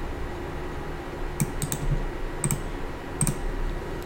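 A few separate clicks of a computer keyboard and mouse, scattered from about a second and a half in to just past three seconds, over a low steady room hum.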